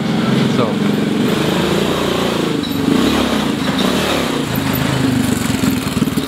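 Small motorcycle engine of a sidecar delivery cart loaded with crates of glass bottles, running close by as it rides past, its note rising and falling.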